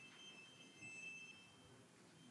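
Near silence: room tone, with a faint high electronic tone about a second in.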